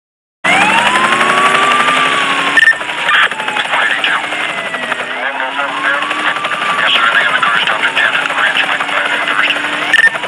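Filter sound effects of a police siren wailing in long rising and slowly falling sweeps over the fast chop of a helicopter rotor, with a short beep about two and a half seconds in.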